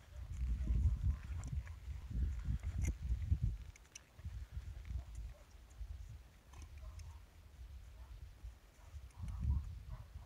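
A horse stepping sideways over a ground pole on an arena's sandy dirt, with soft, muffled hoof steps. A gusting low rumble, strongest in the first few seconds and again near the end, runs under it.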